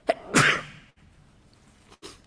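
A man sneezes once into a tissue. A short catch of breath comes first, then the sneeze about half a second in.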